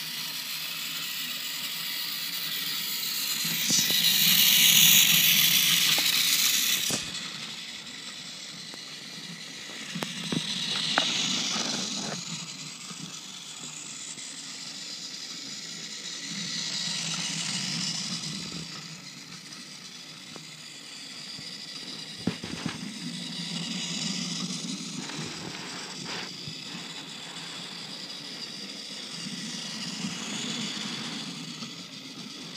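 Battery-powered Trackmaster Thomas toy engine running on blue plastic track: a small electric motor whirring, with plastic wheels rattling on the rails. The sound swells and fades about every six or seven seconds as the engine laps the circle, with a few sharp clicks along the way.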